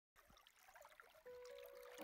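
Faint underwater noise of a flowing stream, a soft hiss with small ticks. About a second in, soft background music with long held notes fades in.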